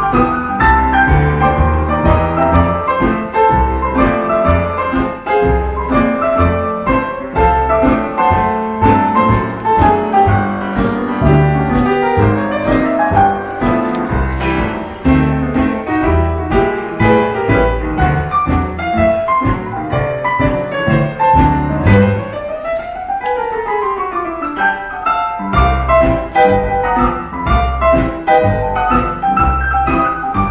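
Piano played solo, an instrumental break of chords over a bass line. About three-quarters of the way through, the bass drops out for a few seconds of quick runs up and down the keyboard before the full chords return.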